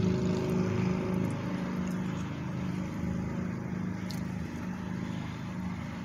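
Steady low hum of a car idling, heard from inside the cabin, with a faint tick about four seconds in.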